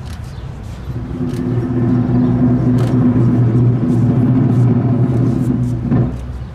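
A low, pitched drum roll that starts about a second in, swells and then holds steady and loud, with sharp clicks scattered over it.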